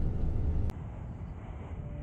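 Low outdoor background rumble that cuts off abruptly with a click less than a second in, leaving a faint hiss.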